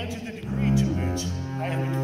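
Double bass played with a bow: a few sustained low notes, the pitch changing about half a second in and again around the middle.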